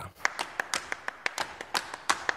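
Rhythmic percussion from a radio programme jingle: quick, sharp taps or claps, about six or seven a second.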